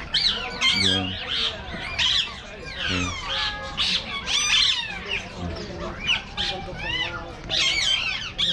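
Many caged birds calling at once: a dense, overlapping chatter of squawks and quick rising-and-falling whistles.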